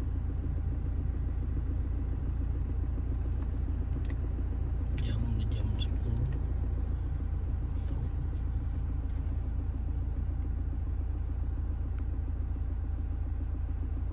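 Toyota Fortuner's engine idling, heard from inside the cabin as a steady low rumble.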